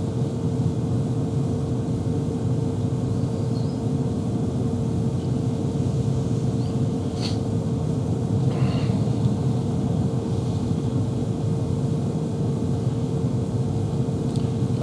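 Steady low rumble of room background noise with a constant faint hum, and a single faint click about seven seconds in.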